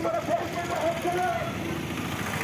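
A vehicle engine running steadily, with voices from a crowd over it in the first second or so.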